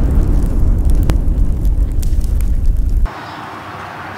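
A loud explosion-and-fire sound effect: a deep rumble with scattered crackles. It cuts off suddenly about three seconds in, leaving a much quieter steady background hiss.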